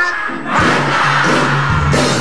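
Studio band music starts up about half a second in, with steady bass notes.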